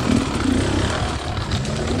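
Beta enduro dirt bike's engine running at low, steady revs as the bike picks its way over a rocky trail, with a haze of wind and riding noise over it.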